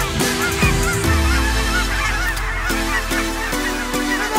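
A large flock of geese honking, many overlapping calls at once, over electronic background music with a deep bass.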